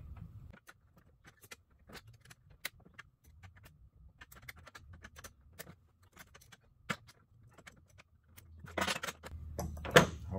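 Small metal clicks and clinks of a caster's bolt and nut being tightened onto a steel retractable lift bracket with a small flat wrench, mostly faint and irregular, with a sharper click about seven seconds in and a louder metallic clatter near the end.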